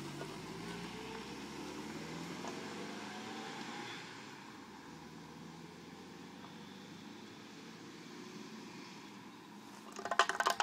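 A car driving away, its engine note rising slowly as it accelerates over the first four seconds, then fading to a faint steady hum.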